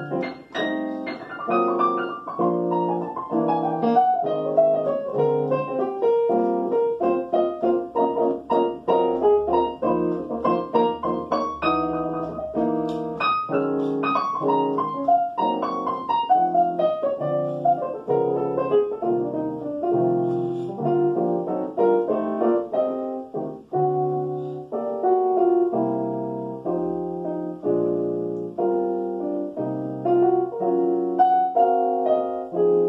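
Solo jazz piano played on a digital stage piano: chords over a walking set of bass notes, with quick downward runs in the right hand twice.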